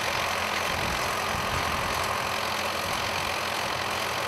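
Tractor engine running steadily while it pulls a vegetable seedling transplanter, with a constant even noise over it.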